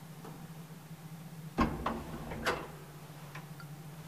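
Mechanism of a 1936 ASEA traction elevator with a collapsible gate: one heavy clunk about one and a half seconds in, followed by two lighter clacks, over a steady low hum.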